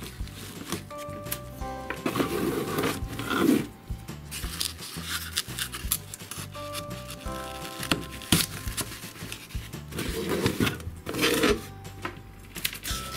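Background music, with bouts of rustling and scraping as wooden skewers are pushed down through foam pieces into a cardboard box, twice: about two seconds in and again about ten seconds in.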